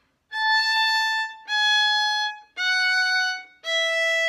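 Violin played with the bow: four separate long notes, each about a second, stepping down the A major scale.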